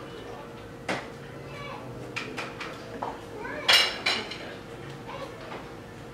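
Serving utensil and dishes clinking as food is dished onto a plate: a handful of separate sharp clinks, the loudest pair about two-thirds of the way through.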